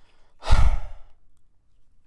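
A man's heavy sigh, exhaled once about half a second in and lasting about half a second, blown into a handheld microphone held close so the breath thumps low on it.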